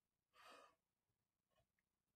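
Near silence, with one faint breath about half a second in.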